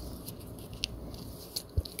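Quiet handling noise: fingers turning a plastic pen with a cardboard tag, giving a few small clicks and rustles, one about halfway through and a couple more near the end.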